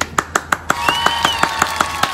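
A man clapping his hands rapidly, about five claps a second. Partway through, a held tone with a higher tone arching above it joins the claps.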